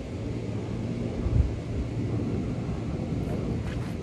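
Outdoor low rumble of wind on the microphone with a faint steady hum underneath, and one low thump about a second and a half in.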